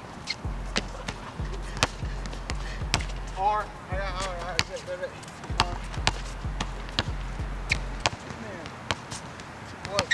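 A basketball dribbled on an outdoor hard court: a string of sharp bounces, roughly two a second, running irregularly.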